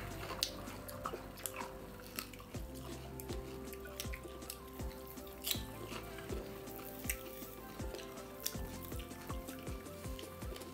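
Soft background music with steady held notes and a bass line, over close eating sounds: chewing and scattered small sharp clicks as food is eaten by hand from steel plates.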